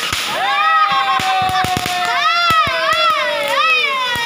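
Fireworks crackling with many sharp pops, over a firework's continuous whistle that slides slowly down in pitch and wobbles up and down in its second half.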